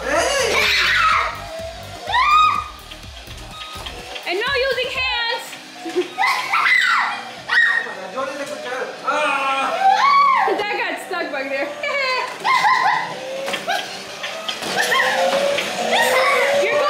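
Excited voices, a child's among them, shouting and laughing over background music.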